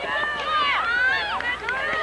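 Several high-pitched voices shouting and cheering over one another, each call rising and falling in pitch, typical of spectators and players at a children's soccer game.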